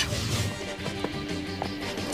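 Quiet background music from the cartoon's score, held sustained notes.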